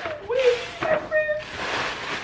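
A few short, pitched vocal sounds that rise and fall, then a steady rustling of gift wrapping from about a second and a half in.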